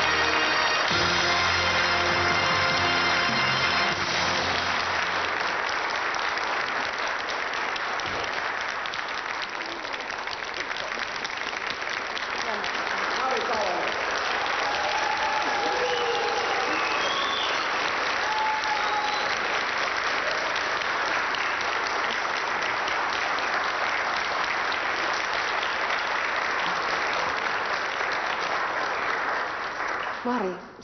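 Studio audience applauding, over a music track that stops about four seconds in; a few voices call out midway through the clapping.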